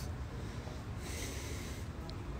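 A breath through the nose close to a phone microphone, a soft hiss about a second in, over a steady low background rumble.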